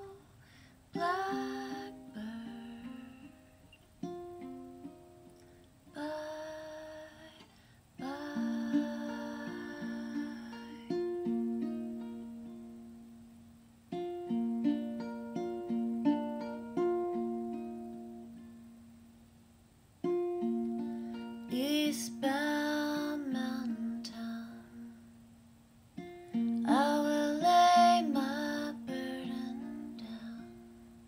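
Solo acoustic song: chords plucked on a small plucked-string instrument, each fading before the next, with a woman's singing voice coming in over them in several phrases, loudest near the end.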